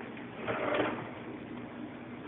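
Handling noise from the camera being picked up and swung round: a soft rubbing rustle that swells briefly about half a second in, over quiet kitchen room tone.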